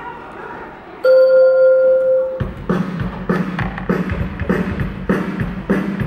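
Routine music starting over low hall chatter: one loud held note about a second in, then music with a steady beat from about two and a half seconds in.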